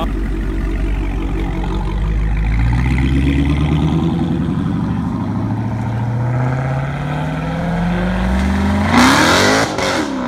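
Dodge Challenger pulling away under acceleration, its engine note rising steadily in pitch over several seconds. Near the end, a short, loud rush of noise.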